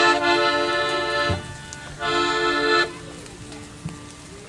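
Accordion sounding held chords: a sustained chord that stops a little over a second in, then after a short pause a second, shorter chord held for under a second.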